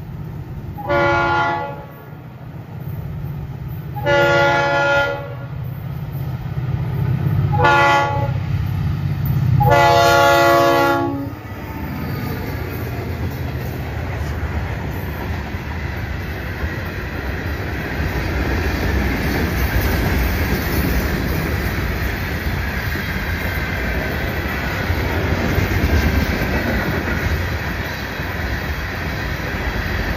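Diesel freight locomotive's air horn sounding the grade-crossing signal, long, long, short, long, over the low rumble of the approaching engines. Then the freight cars roll past with a steady wheel-on-rail rumble and clatter.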